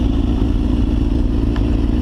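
2005 Suzuki GSX-R1000's inline-four engine idling steadily, with no revving.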